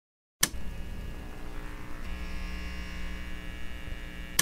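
Neon sign buzz sound effect: a click about half a second in, then a steady electrical hum that grows brighter and fuller about two seconds in as the sign lights up.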